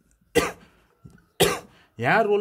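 A man coughing twice, about half a second and a second and a half in.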